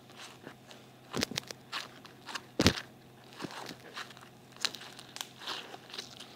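Sticky pink slime full of tiny beads being handled and pulled apart by hand, giving irregular crackles and snaps, the loudest about two and a half seconds in.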